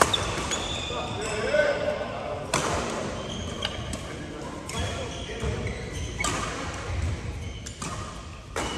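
Badminton rally in a large indoor hall: sharp racket strikes on the shuttlecock every one to two seconds, with short high squeaks from shoes on the court and players' voices in the background, all with hall echo.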